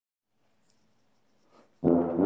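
Near silence with a faint click, then near the end a brass quintet comes in together on its first loud chord.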